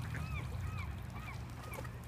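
A waterbird calling: a series of short arched calls, a few per second, growing fainter and dying away near the end, over a low steady rumble.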